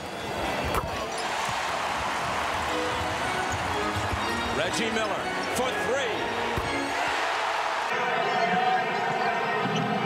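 Basketball game audio: arena crowd noise with the ball dribbling on the hardwood and a few short sneaker squeaks about halfway through. Near the end the crowd sound changes abruptly and steady tones run through it.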